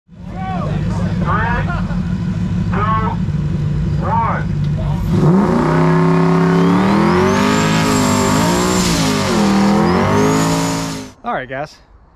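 Fox-body Ford Mustang doing a burnout. The engine idles under shouting voices, then revs up hard about five seconds in and is held at high, wavering revs while the rear tyres spin and squeal. The sound cuts off abruptly near the end.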